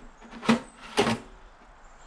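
Two sharp knocks about half a second apart as a stainless steel side cover panel is set back onto a continuous inkjet printer's cabinet.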